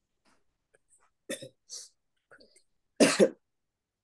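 A woman coughing: small coughs about a second in, then a louder double cough near the end.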